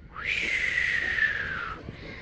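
A person whistling one long note that leaps up sharply and then slides slowly downward, breathy.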